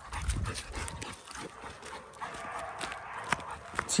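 A Rottweiler and its walker stepping along a gravel path, with irregular light crunches and clicks, and the dog panting.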